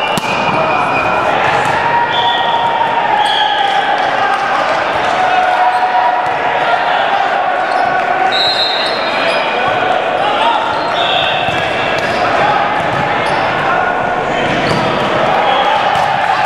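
Volleyball rally in a large, echoing gym: sneakers squeak on the hardwood floor, the ball thuds at intervals, and many voices talk and call in the background.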